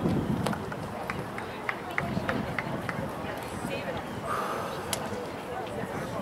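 Outdoor soccer-match ambience: faint, distant voices of players and people on the sideline across an open field, with a scatter of light ticks in the first half and a brief louder call a little over four seconds in.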